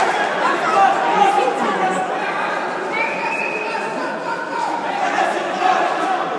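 Spectators chattering in a large sports hall: many voices overlapping at a steady level, none standing out, with the hall's echo.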